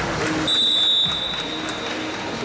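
Referee's whistle, one long high blast starting about half a second in and lasting well over a second, over crowd noise in the hall: it stops the bout as the score reaches 12-1, an eleven-point lead that ends the match on technical superiority.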